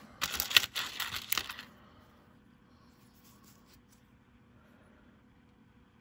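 Pennies clicking and scraping against each other and the table as a hand sifts through a pile of loose cents, for about a second and a half. This is followed by near silence with a few faint clicks.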